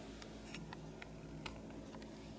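Several faint, scattered clicks and ticks, the sharpest about one and a half seconds in, over a steady low hum of room tone.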